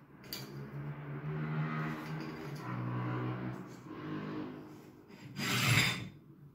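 Rubbing and scraping of a paper block and metal spring clips being handled on a cutting mat, with a low, drawn-out groan, and a louder brief scrape near the end as the clips are clamped on.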